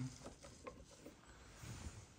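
A few faint clicks and rubbing as a scooter's handlebar brake lever is squeezed and released by hand to check that it moves freely.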